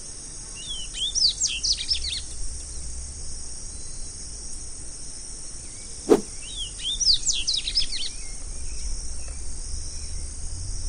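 Double-collared seedeater (coleirinho) song: two quick twittering phrases of rapid high notes, one near the start and one about halfway through, over a steady high hiss. A single sharp click falls just before the second phrase.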